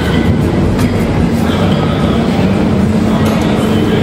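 Loud, steady rumbling gym room noise, with a low hum that comes in about halfway and holds.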